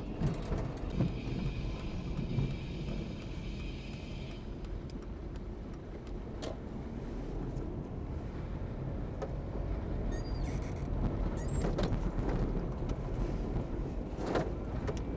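Engine and road noise inside a car driving slowly, picked up by a dashcam microphone: a steady low rumble, with a faint high steady tone during the first few seconds and a few light clicks.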